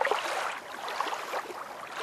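Water splashing and lapping, a rushing noise that swells and fades in uneven surges.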